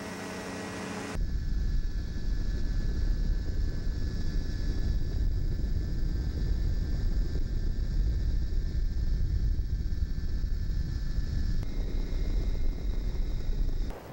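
Ultralight trike in flight: a steady engine drone buried in heavy low wind rumble on the microphone. The rumble jumps abruptly louder about a second in.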